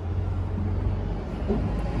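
Low, steady rumble of a semi-truck's diesel engine idling.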